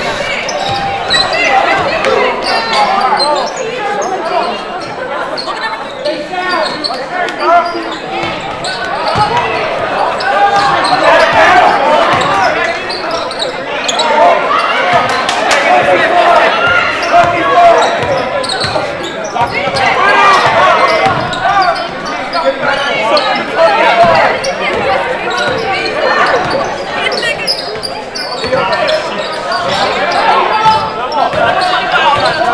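Basketball dribbled and bouncing on a hardwood gym floor during play, with spectators and players talking and calling out, echoing in the gym.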